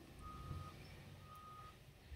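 Two faint beeps of one steady pitch, each about half a second long and about a second apart, over a quiet background hum.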